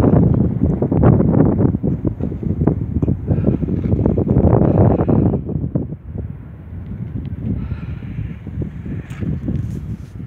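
Wind buffeting the microphone, a loud rough low rumble that eases off about halfway through.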